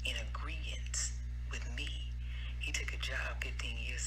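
A woman speaking, over a steady low hum.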